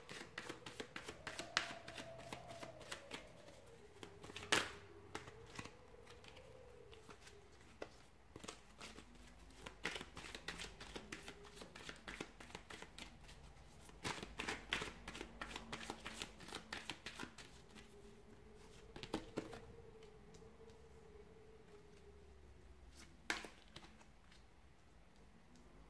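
A tarot deck being shuffled by hand: quiet, irregular bursts of card edges slipping and flicking, with a few sharper slaps of the cards. Near the end a card is laid down on the cloth.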